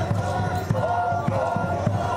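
Hand-held drums beaten in a steady rhythm for a Naga warrior dance, with dancers' voices calling and chanting over the beat, one call held briefly about a second in.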